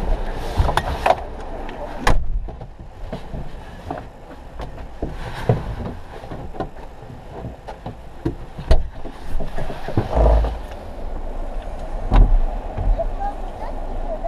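Indistinct voices and background noise heard from inside a parked car, with scattered knocks and a few low thumps, the loudest about ten and twelve seconds in.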